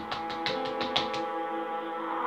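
Background music from a TV drama score: a few soft plucked notes over held tones, thinning out in the second half.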